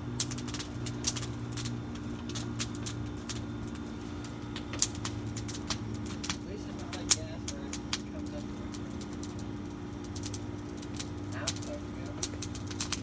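Campfire of dry grass and sticks crackling, with irregular sharp snaps and pops throughout, over a steady low hum.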